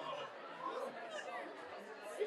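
Background chatter: several people talking at once, with no clear words.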